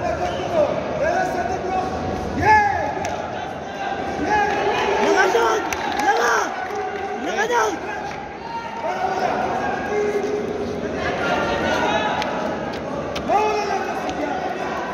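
Men's voices shouting short calls one after another in a large indoor sports hall during a boxing bout, with a few sharp thuds among them.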